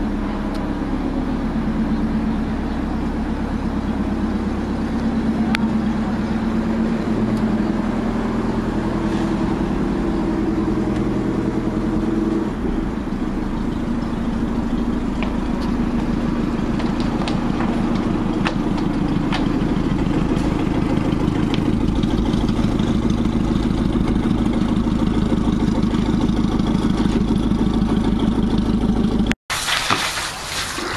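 A boat's engine idling close by, a steady low running whose pitch shifts slightly twice; the sound cuts off abruptly near the end.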